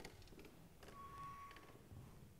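Near silence: room tone with a few faint clicks and knocks, and a faint steady tone lasting under a second in the middle.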